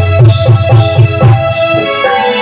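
Instrumental interlude of a devotional bhajan: a held keyboard melody over a steady hand-drum rhythm, with low drum strokes falling a few times a second.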